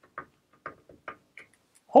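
A writing tool tapping and scraping on a blackboard in four short strokes, roughly half a second apart.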